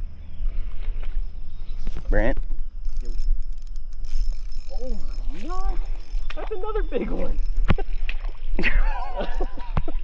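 Indistinct voices in several short stretches over a steady low rumble, with a couple of sharp clicks near the end.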